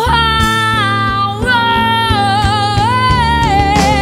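Female lead vocal in a Filipino pop song holding one long high note with vibrato, rising briefly about three seconds in, over a backing band with guitar and bass.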